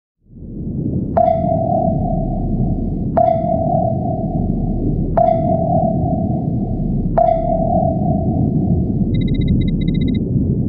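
Logo-intro sound effect: four sonar-like pings, evenly spaced two seconds apart, each ringing on after a sharp strike, over a low rumbling drone. A quick run of short high electronic beeps begins near the end.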